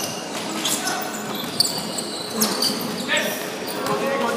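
Basketball game in a large sports hall: a basketball bouncing on the wooden court amid players' footsteps and shouts, with a sharp knock about a second and a half in.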